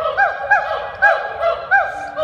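Gibbon singing: a run of loud, repeated whooping notes, each a quick rise and fall in pitch, about two a second.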